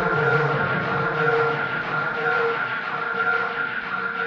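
House track in a breakdown: the bass and drums have dropped out, leaving sustained synth tones over a soft wash, slowly getting quieter.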